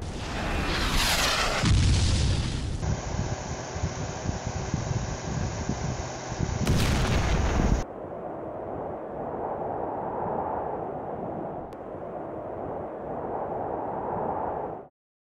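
Film soundtrack of explosion-like blasts. A falling whistle leads into a heavy, deep boom about two seconds in, and another loud burst comes around seven seconds. A steadier rumbling bed follows and cuts off abruptly.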